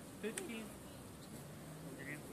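Faint distant voices, with a sharp click about a third of a second in and a brief steady buzz in the second half.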